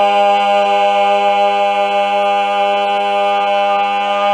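Barbershop quartet of four male voices holding the final chord of an a cappella song, one loud, steady chord with no change in pitch, easing very slightly in loudness.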